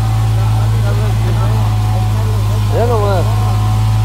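A steady low engine hum runs throughout, with a person's voice calling out once, rising and falling, about three seconds in.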